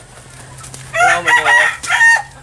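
A hand-held chicken squawking in several short, high calls, starting about a second in.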